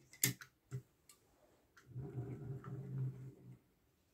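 Sharp clicks from the parts of a 1/50 scale diecast truck and low-loader trailer model being handled, about four of them in the first two seconds, the loudest right at the start. About two seconds in, a low steady hum follows for a second and a half and then stops.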